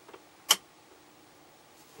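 A single sharp click about half a second in, with a fainter tick just before it, over a quiet steady background.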